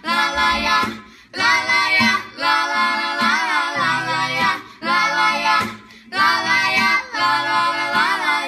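Children's voices, two girls and a boy, singing a Portuguese song together to an acoustic guitar. The sung phrases break off briefly about a second in, near five seconds and around six seconds.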